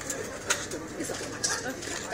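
Indistinct murmur of nearby voices, with a couple of sharp clicks, one about half a second in and another near the end.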